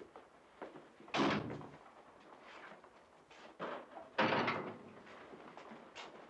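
Footsteps on a hard floor, with two louder bangs, one about a second in and another about four seconds in.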